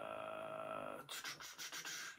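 A man's drawn-out hesitation, a held "uhh" on one steady pitch, lasting until about a second in. After it come a few faint ticks and breaths.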